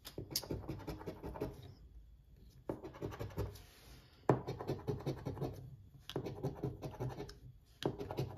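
A metal coin-style scratcher scraping the coating off a scratch-off lottery ticket in quick back-and-forth strokes, in four bursts with short pauses between them, the third starting the loudest.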